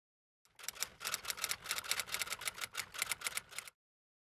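Typing sound effect: a quick run of key clicks, about eight a second, for about three seconds, starting half a second in and stopping suddenly.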